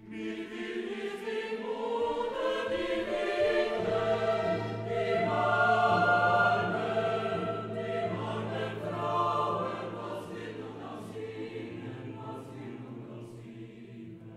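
A choir singing a choral piece over a sustained low note, swelling to its loudest about six seconds in and then gradually quieting.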